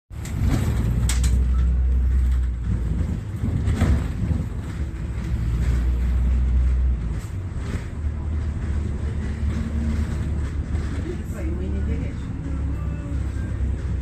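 Low, steady rumble of a moving road vehicle heard from inside the cabin, with a few sharp knocks and jolts along the way.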